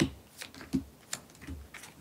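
Tarot cards being dealt and laid down on a table: a quick series of light, sharp clicks and taps, about one every third of a second, as cards and long fingernails strike the card faces.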